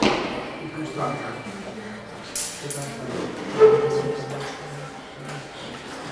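Faint, low murmured voices in a hushed room, with a couple of brief clicks about two and a half seconds in and a short, louder vocal sound a second later.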